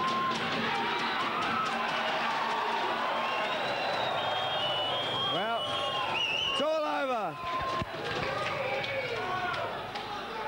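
Fight crowd cheering and shouting at ringside, with loud single yells about five and a half and seven seconds in.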